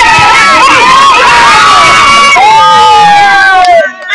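A group of children cheering and shouting together, many voices overlapping, with one long drawn-out call in the second half that falls slightly in pitch.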